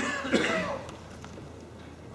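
A person coughing and clearing their throat in the first second or so, followed by quiet room background.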